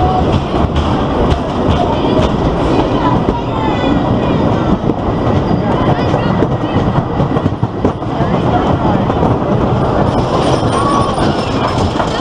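Blue Streak wooden roller coaster train rolling out of its station, its wheels rumbling and clattering along the track. Near the end it starts up the lift hill.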